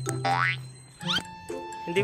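Cartoon-style transition sound effect: a quick rising boing-like sweep, then a few short rising chirps about a second in and a held tone, over background music.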